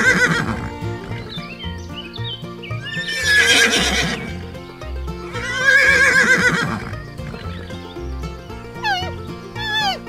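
Three horse whinnies, each a loud, wavering, quavering call, near the start, about three seconds in and about six seconds in, over background music with a steady beat. Near the end come short, quick falling calls.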